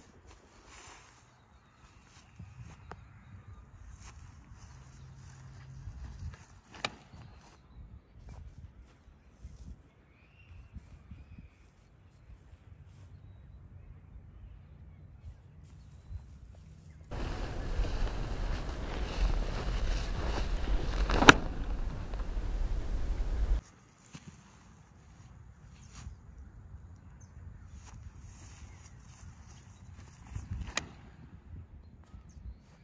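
Quiet outdoor sound of a disc golfer on dry grass: scattered footsteps and a few sharp clicks, with a throw of a disc golf driver near the end. Midway comes a few seconds of loud, steady rushing noise with one sharp crack in it, which then cuts off suddenly.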